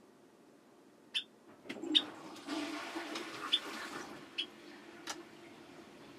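Toilet flushing off-mic: water rushing for about three seconds, then a steady hum as the cistern refills. A few short, sharp chirps or clicks stand out over it.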